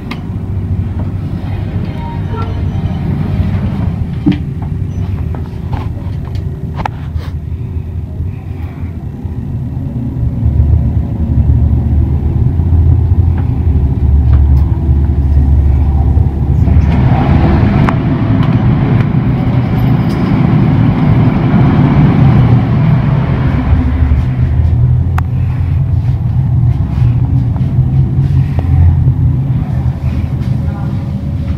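Schindler elevator car travelling down through the basement levels: a steady low rumble of the cab in motion that grows louder about a third of the way in, with a rushing noise layered over it for several seconds in the middle.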